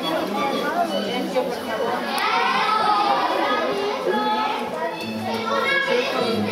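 Several children's voices talking and calling out over one another, one voice rising loudest with sliding pitch about two seconds in.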